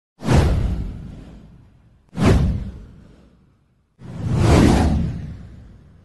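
Three whoosh sound effects of a video title-card intro. The first two come in sharply and fade away over about a second and a half. The third swells in more gradually before fading.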